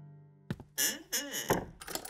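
Cartoon soundtrack: a held music chord dies away, then after a short pause comes a string of brief comic sound effects with swooping pitches and a dull thunk about one and a half seconds in.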